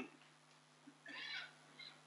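Dry-erase marker squeaking faintly on a whiteboard as writing begins: one squeak lasting about half a second about a second in, and a shorter one near the end.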